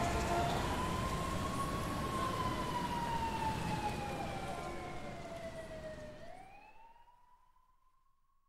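A siren wailing as the track ends. It makes one slow rise and fall, then rises again while it fades out, over a noisy background that dies away about seven seconds in.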